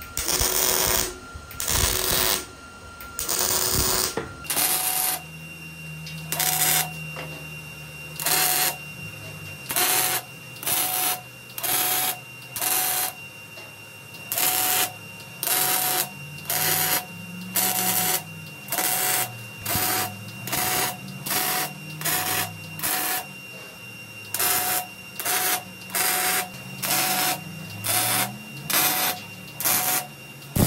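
MIG welding arc firing in a string of short tack welds, about one a second, each burst an even crackle like bacon frying in a pan: the sound of a wire-feed welder set correctly.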